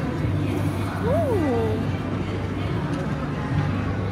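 Busy exhibition hall ambience: a steady low hum and a background of noise, with music faintly playing, and a woman's short drawn-out 'oh' of interest about a second in.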